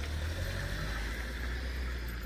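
A motor vehicle's engine running with a low, steady rumble, likely another delivery vehicle moving off nearby.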